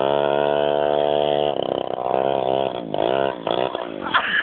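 Small two-stroke engine of a motorized stand-up scooter running at steady revs, then revving down and up a few times in the second half as it is ridden.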